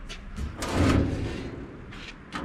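A brief scraping swish that swells and fades within about a second, as a hand rubs across the sheet-metal hopper cover of a nut harvester.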